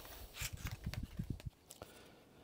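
Soft handling knocks and light taps as a new spark plug is slid out of its cardboard box, a quick run of small sounds that stops about a second and a half in.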